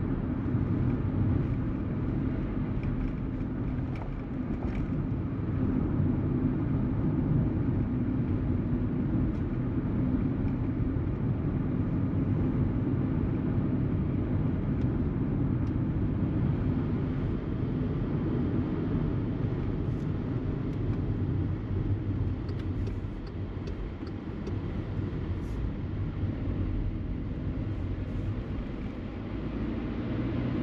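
A car driving steadily on an asphalt road, heard from inside the cabin: a low, even rumble of engine and tyre noise.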